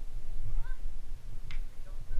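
Wind rumbling on the head-mounted camera's microphone, with a short faint high call that bends in pitch about half a second in and a sharp click about a second and a half in.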